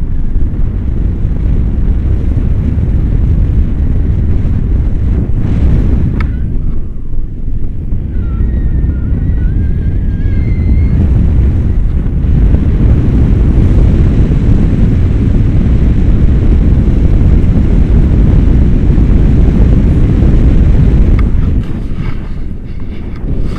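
Wind buffeting an action camera's microphone in paraglider flight: a loud, steady low rumble that eases briefly about six seconds in. A faint wavering tone sits under it for a few seconds just after.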